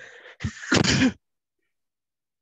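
A person coughing: a noisy breath drawn in, a short cough about half a second in, then a louder, harsh cough just before the one-second mark. The coughing fits come from an irritated throat, which she says is choking her.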